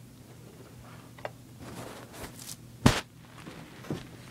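Handling noise from a phone camera being set down: faint rustling and a small click, then one sharp knock a little before three seconds in.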